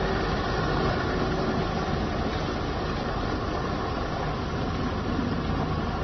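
Diesel engine of a heavy tractor-trailer truck running steadily as the loaded truck drives slowly past.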